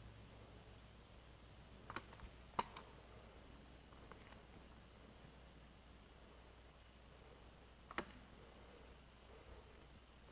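Near silence broken by a few short sharp clicks, the loudest about two and a half seconds in and another near eight seconds: a hand-pumped dual-cartridge dispensing gun being worked as it forces polyurethane through an injection port into a concrete crack.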